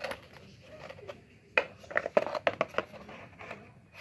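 Plastic motorcycle fairing panel being handled and pushed into place against the bike: a quick run of sharp clicks and scrapes of plastic, starting about one and a half seconds in and lasting just over a second.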